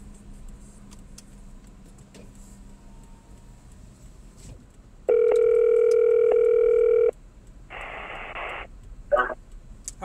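Outgoing phone call ringing: one steady ringback tone about two seconds long, starting about halfway through, followed by a short burst of hiss.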